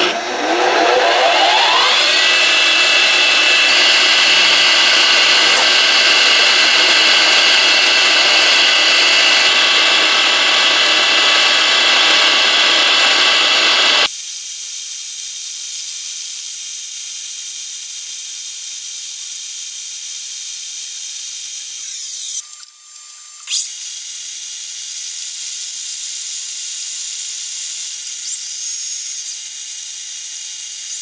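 Milling machine spindle spinning up with a rising whine, then running steadily and loudly as a drill bit bores into a rusty steel trailer axle tube. About halfway through the sound cuts suddenly to a thinner, higher hiss with a faint steady whine.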